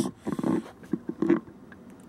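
Laminate cabinet door with its metal hinges and catch being swung open and handled: a few short knocks and clicks, the loudest at the very start and about a second and a quarter in.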